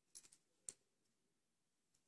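Near silence, with a few faint clicks of metal circular knitting needles being worked through wool in the first second.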